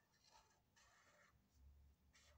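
Felt-tip marker writing on paper, very faint: two short scratchy strokes, then a dull low thump near the end.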